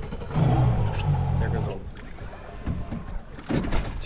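Indistinct voices, about a second long early on and briefly again near the end.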